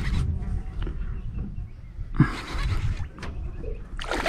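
Wind rumbling on the microphone out on open water, with a sharp tap and a brief hiss about halfway through and a lighter tap a second later.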